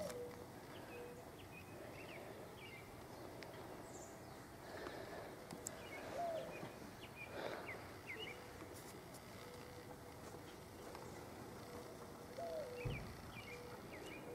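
Faint outdoor ambience with scattered short, distant bird chirps and a faint, thin steady tone that comes and goes.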